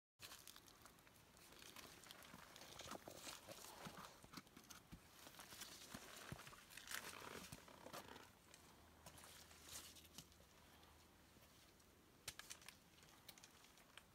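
Faint footsteps on rock and roots, with scattered sharp taps of trekking poles and rustling of clothing and pack, as a hiker picks a way along a steep rocky trail.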